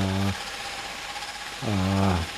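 Electric drill with a paddle mixer stirring cement slurry in a plastic bucket, running steadily with a faint whine and a fine grainy rattle.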